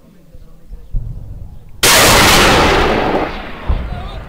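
A sudden, very loud blast of heavy weapons fire about two seconds in, overloading the recording and fading over about a second and a half, followed by a short thump near the end.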